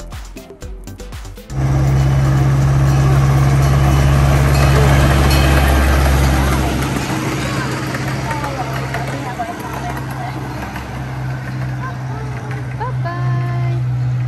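Engine of a miniature passenger train running with a steady low hum and rushing noise as the train passes close by. It comes in suddenly after a brief bit of music, and its deepest note drops away about halfway through. Faint voices can be heard underneath.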